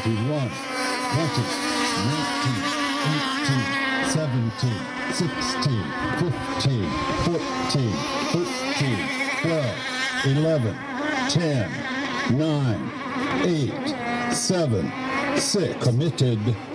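Several radio-controlled racing boats' small engines buzzing on the water, their pitch rising and falling again and again as they throttle up and down and pass by.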